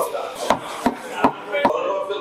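Four sharp knocks about 0.4 s apart, as a stainless-steel milk jug is tapped on the counter to settle the foam on freshly steamed milk.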